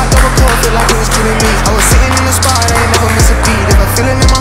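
Hip-hop trap music with a steady beat: long held deep bass notes under regular kick drums and fast hi-hat ticks.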